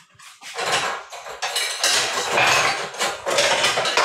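Dishes and cutlery clattering as kitchenware is handled, a dense run of clinks and knocks starting about half a second in.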